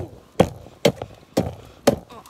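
A rapid, even series of sharp knocks, about two a second, five in all, each trailing a brief ring that falls in pitch.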